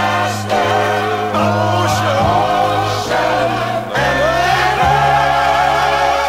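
Gospel quartet and choir singing sustained harmonies, the held chords changing every second or so over steady low notes.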